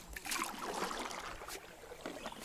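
Water splashing and lapping around a kayak hull, with a few brief light splashes.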